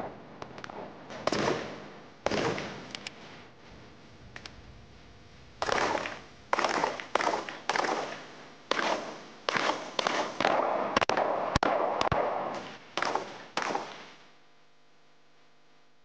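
Gunshots from two shooters alternating rifle and pistol fire while advancing: single shots at first, then a rapid, irregular string of shots, each with a short echo. They stop about two seconds before the end.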